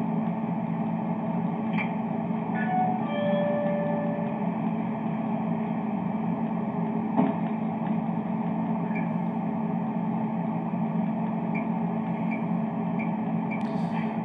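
Steady hum and hiss of a gas station store as picked up by its surveillance camera's microphone, dull and thin in sound, with a few faint short tones and one sharp click about seven seconds in.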